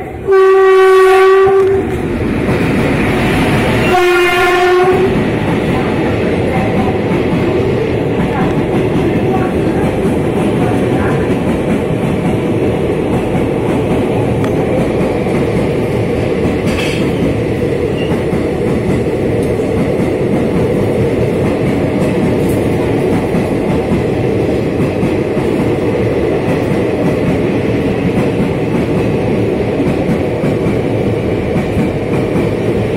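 Electric locomotive of an express train sounding its horn twice, a blast of about a second and a half then a shorter one a few seconds later. The train then runs through the station at speed, its coaches passing with a steady wheel and rail noise.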